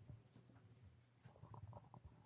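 Near silence: faint room tone with a low hum and a few faint, short soft sounds about one and a half seconds in.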